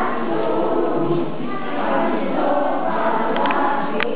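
A group of young children singing together in unison.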